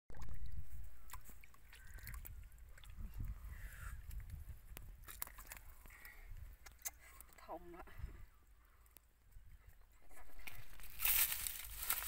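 Hand-fishing field sounds: muddy water sloshing, a woman's brief laugh a little past halfway, and then the crunch and rustle of bare feet walking through dry rice stubble near the end.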